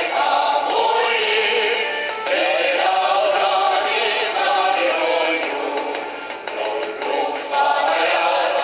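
A choir of young singers singing a song together, accompanied by their own hand-clapping.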